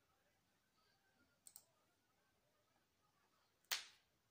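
Near silence with small clicks: two faint ones close together about one and a half seconds in, then a single sharper, louder click near the end.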